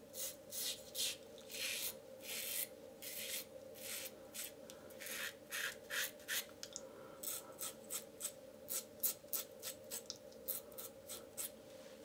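Yates titanium 'Merica double-edge safety razor with a Feather stainless blade on its third use, scraping through lathered stubble in short strokes that get quicker and shorter in the second half. The blade is still cutting well.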